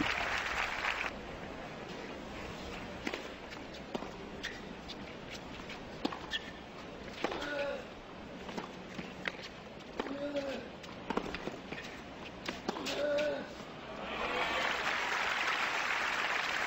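A tennis rally: rackets strike the ball in sharp pops about a second apart, a few of them with a short grunt. Applause dies away in the first second, and crowd applause breaks out again near the end as the point is won.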